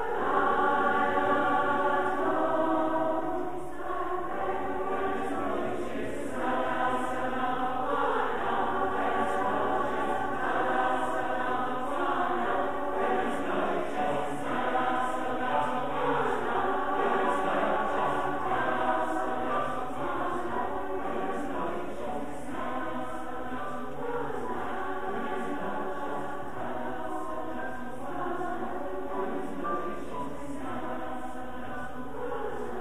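A large mixed choir of men's and women's voices singing a sustained, harmonised choral passage, with no instruments standing out. It is fullest at the start and eases a little softer toward the end.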